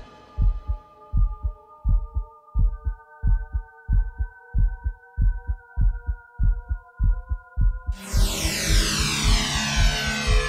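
Eerie intro soundtrack: a steady heartbeat-like low thudding under a held synthesizer chord, then about eight seconds in a rush of falling, sweeping tones over the continuing beat.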